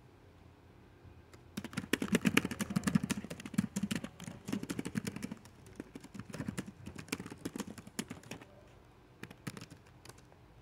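Rapid, irregular clicking and tapping like typing on a keyboard. It starts about a second and a half in, thins out after about eight seconds, and a few stray clicks come near the end.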